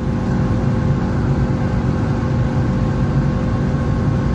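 Fiat Uno's 1.0-litre 8-valve Fire four-cylinder engine running steadily at high revs, around 6,000 rpm, at close to 175 km/h, heard from inside the cabin with road noise underneath.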